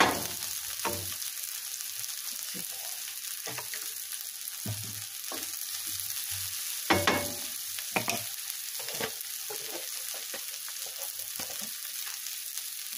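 Purple dead-nettle leaves, onion and garlic sizzling steadily in a frying pan, with a few knocks and scrapes of a wooden spoon, the loudest about seven to eight seconds in.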